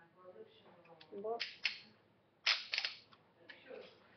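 A quick cluster of sharp plastic clicks from a small plastic Happy Meal viewer toy being worked by hand, about two and a half seconds in.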